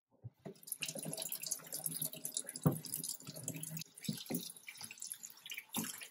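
Kitchen tap water starts running about half a second in, splashing into a plastic colander of raw chicken pieces in a stainless steel sink, with hands rinsing and turning the chicken. Several dull knocks, the loudest near the middle, come from the colander being handled.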